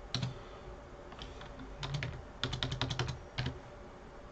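Keystrokes on a computer keyboard as numbers are typed in: a few scattered taps, then a quick run of about eight keys in under a second, and one more tap shortly after.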